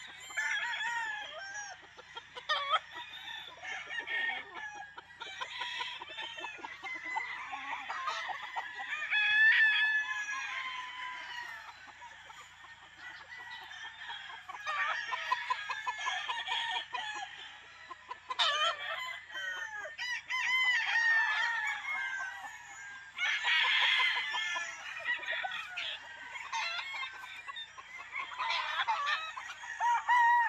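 Several gamefowl roosters crowing one after another and overlapping, with clucking in between; the loudest crows come about ten seconds in and again at about twenty-four seconds.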